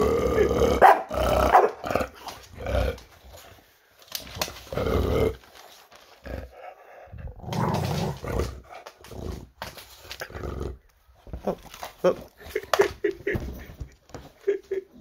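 Bulldog barking and growling in several short bouts, afraid of a curled strip of wrapping paper.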